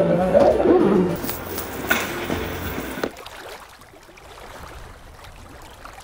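Voices making drawn-out, gliding wails and growls for about the first second, without words, then a quieter stretch of faint noise with a few knocks.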